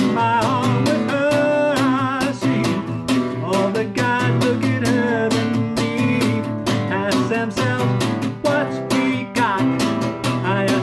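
Song played live: a strummed guitar with a voice singing over it, in a rough demo recorded into a single microphone.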